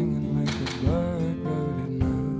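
Acoustic guitar played live, picked notes ringing over sustained chords.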